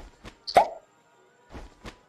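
Toy cork gun at a shooting gallery firing: one sharp pop about half a second in, then a couple of faint clicks near the end.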